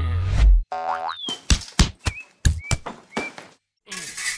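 Cartoon sound effects: a springy boing about a second in, then a quick series of sharp sword-blade clashes, several with a short metallic ring.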